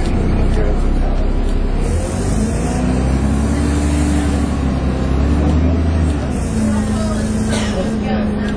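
Dennis Trident 2 double-deck bus heard from inside the passenger saloon, its engine and driveline pulling the bus along a street. The drive note rises and falls in pitch through the middle, settles into a steadier tone later on, and a brief clatter comes near the end.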